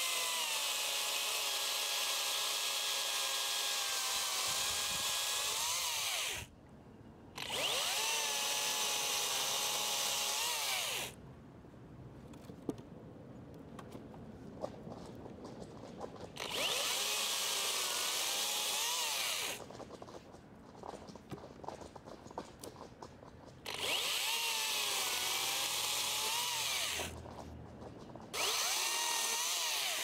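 Makita XCU06 18-volt brushless cordless top-handle chainsaw cutting 4x4 treated lumber and then small logs, in five separate cuts. Each is a steady electric whine whose pitch sags as the chain bites into the wood and rises again as it breaks through, with quieter gaps of handling between cuts.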